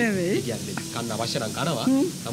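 Speech: people talking in conversation, no other sound standing out.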